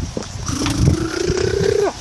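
A boy's long drawn-out vocal cry, held for about a second and a half and rising slowly in pitch before it breaks off, over a low rumble.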